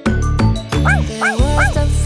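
Upbeat children's song music with a steady beat, and three quick dog barks in a row about a second in.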